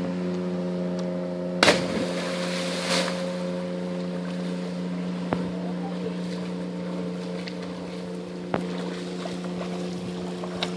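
A person plunging feet-first into lake water from a tree: one loud splash about two seconds in, followed by a second of churning water. A steady low hum runs underneath throughout.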